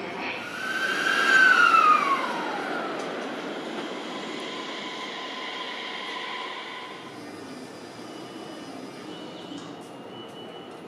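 Train moving through a station with a loud high-pitched squeal that falls in pitch over about two seconds. It is followed by a steadier high tone over the running noise, which eases off after about seven seconds.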